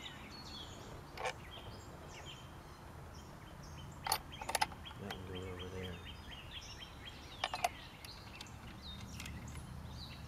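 A few light metallic clicks and clinks as bolts, nuts and the brass barrel are handled and fitted onto a small cannon's wooden carriage, coming singly and then in two quick pairs. Birds chirp faintly in the background.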